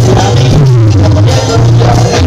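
Live cumbia band playing loudly: a singer over a steady, repeating bass line, with congas, timbales and keyboards.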